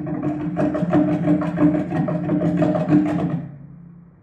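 Several performers beating a fast, dense roll on a hollow container used as a drum, which rings with a booming tone under the strikes. The roll stops suddenly about three and a half seconds in and the ring dies away.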